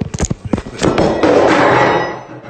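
Handling noise on a phone's microphone as the phone is grabbed and swung around: a quick run of knocks, then about a second of loud rubbing and rustling against the mic.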